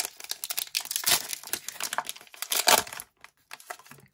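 Foil wrapper of a Pokémon Shining Fates booster pack being torn open and crinkled in hand: a run of crackling rustles, loudest about a second in and again near three seconds, that stops about three seconds in.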